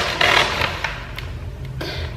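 Scissors cutting a sheet of wrapping paper, the paper rustling and crackling, loudest at the start, then a few small clicks.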